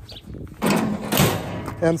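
Rustling, scraping handling noise of a phone rubbed against hand and clothing close to its microphone while it is turned round, starting about half a second in and lasting about a second.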